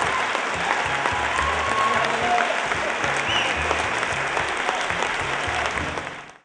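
Audience applauding, with music underneath carrying a low bass line.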